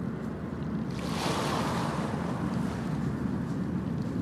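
A steady rushing wash of noise with a low rumble under it, swelling and brightening about a second in before settling.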